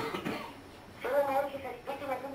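A person coughs once at the start, then a voice comes in about a second later, holding one drawn-out sound at a fairly steady pitch.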